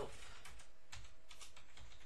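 Typing on a computer keyboard: a run of irregular key clicks.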